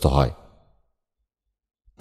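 A narrating voice finishes a spoken word in the first half second, then near-total silence.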